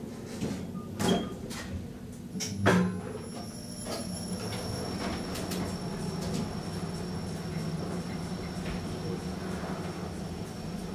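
KONE EcoDisc traction elevator: two loud clunks as the doors close in the first three seconds, then the car travelling down with a steady hum and a thin high whine.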